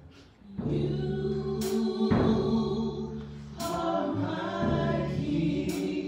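Live gospel worship song: a woman sings lead with backing voices over sustained electric bass notes, with a percussion hit about every two seconds.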